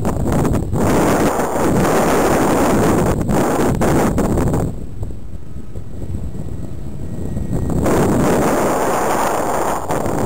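Wind buffeting the camcorder microphone in a steady rumble, easing off for about three seconds in the middle before picking up again.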